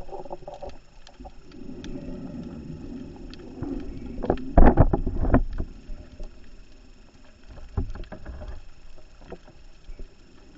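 Underwater sound of a scuba diver's regulator breathing: a low rushing breath, then a louder burst of exhaled bubbles about halfway through, the loudest part. Faint short clicks are scattered throughout.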